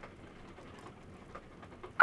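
Faint rain ambience, an even patter with a few soft ticks, laid under the recording as a background sound effect.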